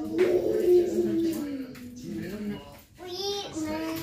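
A child's voice singing long, drawn-out notes. The first note slides slowly downward, and a second held note comes after a short break near the end.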